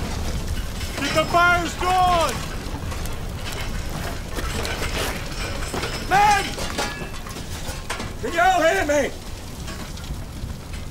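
Men shouting in three short bursts, about a second in, around the middle and near the end, over a steady low rumble and hiss.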